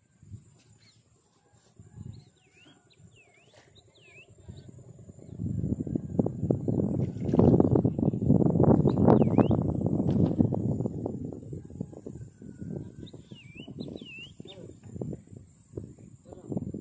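Small birds chirping in short rising-and-falling calls, in two bouts near the start and near the end. A much louder stretch of unclear low rustling noise fills the middle.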